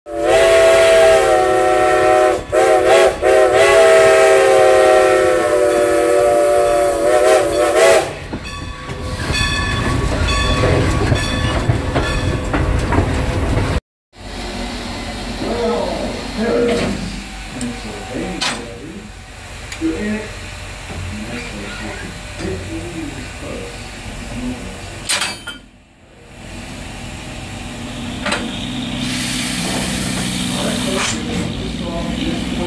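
Steam whistle of Strasburg Rail Road's 2-10-0 Decapod steam locomotive No. 90 blowing one long blast of about eight seconds, its pitch wavering as it opens and closes. It is followed by the steady running noise of the locomotive and its cars rolling on the track.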